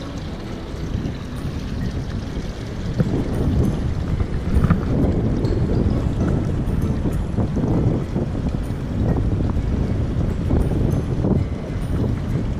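Wind buffeting the microphone: a gusty low rumble that rises and falls, with surf faintly behind it.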